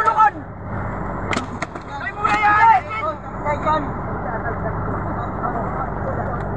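A boat engine running steadily, with a sharp knock about one and a half seconds in.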